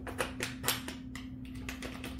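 A pin and a transom-wheel bracket clicking and tapping as the pin is fitted by hand: a quick run of light clicks in the first second or so, then a few more, over a steady low hum.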